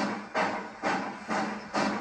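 Steam-train chugging sound effect in a recorded children's song: four short chuffs, about two a second, over a faint held note.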